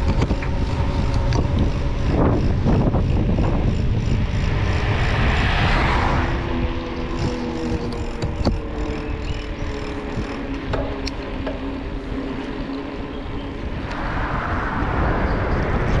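Wind buffeting the microphone of a camera riding on a moving bicycle, a steady low rumble with rushing swells. In the middle a faint steady drone runs underneath, slowly falling in pitch.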